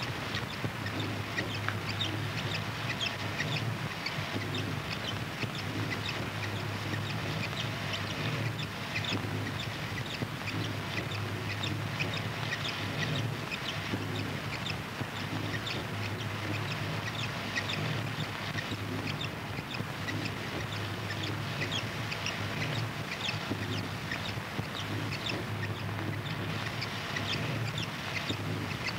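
Experimental noise recording: a steady low hum under dense, irregular crackling and clicking.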